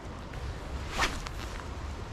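Spinning-rod cast: one quick swish about a second in, over a steady low rumble.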